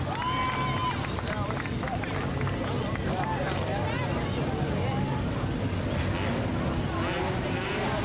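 Four-cylinder race cars' engines running on the track as a steady low rumble, with people talking close by over it.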